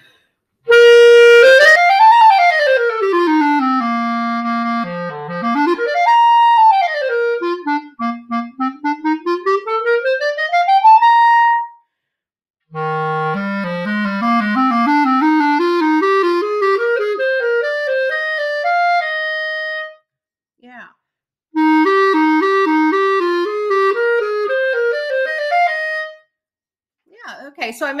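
Jupiter JCL1100S intermediate wooden B-flat clarinet played solo. It opens with fast runs sweeping up and down for about eleven seconds, then climbs note by note from the bottom of its range in a long rising scale. It ends with a shorter rising passage of repeated, alternating notes.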